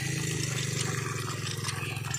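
Cast-iron hand pump (nalka) worked by its lever, water splashing from the spout into a bucket, with faint clanks from the pump. A steady low hum runs underneath.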